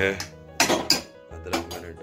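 A metal spoon clinking against an aluminium saucepan of milky tea. There are several sharp clinks, the loudest about half a second in and again around a second and a half in.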